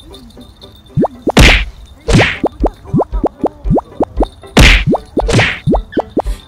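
Background music: an instrumental intro of quick rising "bloop" notes, about four a second, punctuated by sharp noisy hits, starting about a second in.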